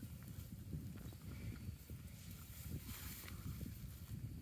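Water buffalo grazing close by, cropping and chewing dry grass in a run of small scattered crunches and rustles, over a low, fluctuating rumble of wind on the microphone.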